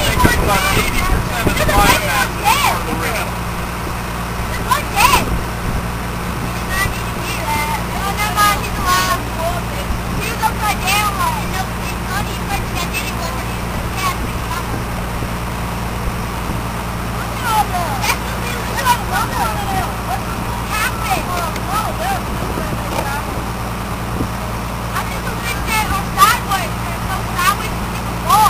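Boat engine running at a steady idle, a low even hum, with children's voices chattering over it.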